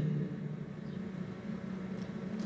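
Steady low hum from a slot machine, sitting between its voice announcement and its spin music.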